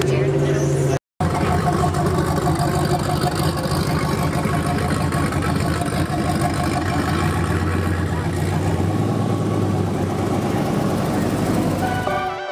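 Car engines and exhausts running as cars drive slowly past, with people's voices over them. The sound drops out for a moment about a second in.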